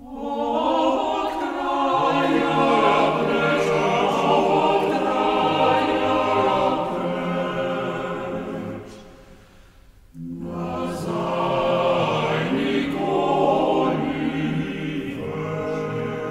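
Vocal octet singing a cappella in several parts over a sustained bass line. The phrase fades out about nine seconds in and, after a short breath, a new phrase comes in about ten seconds in.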